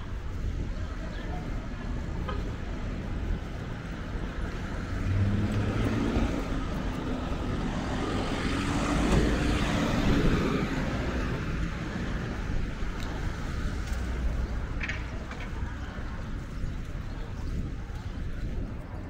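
City street traffic, with a motor vehicle passing close by: its engine and tyre noise swells to a peak about nine to ten seconds in, then fades away.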